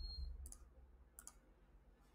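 Two faint computer mouse clicks about three-quarters of a second apart, after a soft low rumble at the start.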